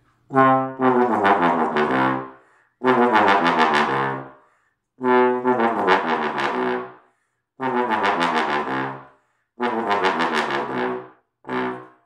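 Single-valve bass trombone, a Conn 60H, playing low false tones in five short phrases and a brief final note, each phrase a few notes stepping down in pitch. These are the low C and B false tones that a single-valve bass trombone needs because it lacks a second valve.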